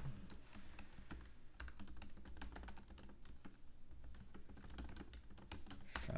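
Typing on a computer keyboard: a quick, uneven run of faint key clicks.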